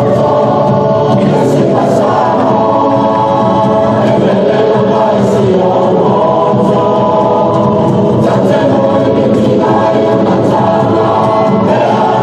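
A group of voices singing a Samoan song in harmony, steady and loud throughout, as accompaniment for a taupou's siva dance.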